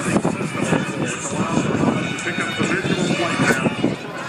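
Jet engine noise from an F/A-18 Super Hornet's twin General Electric F414 turbofans during a slow pass, heard under the steady chatter of a large crowd of spectators.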